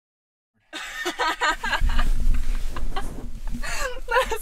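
People laughing in a vehicle cab: a rapid run of laughs that starts suddenly just under a second in, over the low steady rumble of the truck on the road.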